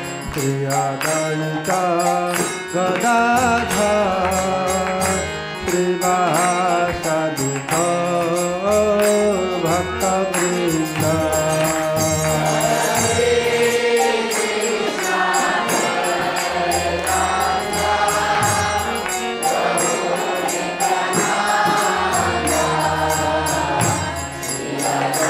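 Devotional kirtan: a lead male voice chants a mantra line and a group of voices answers about halfway through, call-and-response, over a steady rhythmic clash of small hand cymbals.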